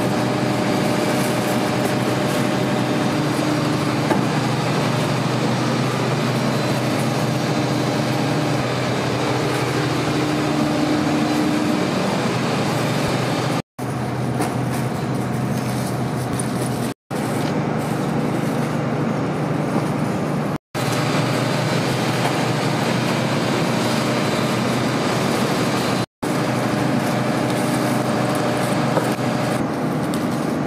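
Loud, steady machine noise with a low hum, broken four times by sudden brief dropouts at the cuts.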